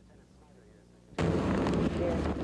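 A faint low hum, then a little over a second in an abrupt jump to loud, steady rushing noise with voices in it, typical of a cut in camcorder tape to a noisier outdoor shot.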